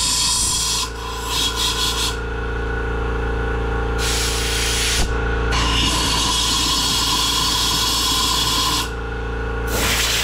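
Compressed air from a hand blow gun hissing in several blasts into a push mower's plastic fuel tank to blow out stale gasoline. The blasts vary in length, the longest about three seconds, over a steady background hum.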